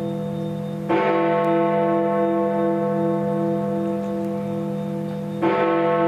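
Big Ben, the Great Bell of the Palace of Westminster, striking the hour: two heavy strokes about four and a half seconds apart. Each stroke rings on with a long low hum that beats slowly. These are the strokes of eleven o'clock that mark the start of the two-minute silence.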